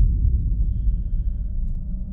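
Low, steady rumbling drone from a horror video's soundtrack, following a sudden hit just before.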